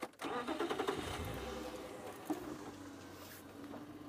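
Mahindra safari vehicle's engine starting just after the sound begins, then running as the vehicle moves off, its hum slowly easing.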